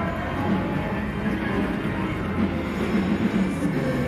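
Steady din of a casino floor: slot machines' electronic jingles and tones over a low, continuous hum.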